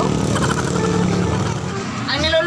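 A motor engine running steadily with a constant low hum, with faint voices.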